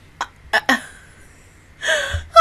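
A woman's laughter in three quick, gasping breaths, followed by a longer breath near the end.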